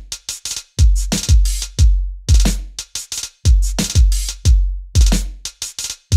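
Programmed drum-machine beat from Logic Pro's 'Boom Bap' Drum Machine Designer kit, looping one bar at 90 BPM: deep kick, snare, hi-hats and a few shaker hits. The bar repeats about every 2.7 seconds.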